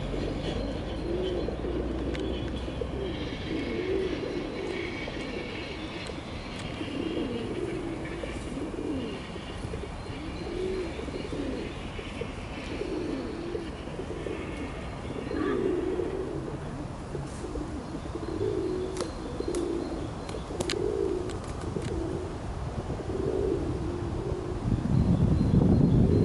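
Pigeon cooing over and over, a low coo every second or two, with small birds chirping higher up during the first half.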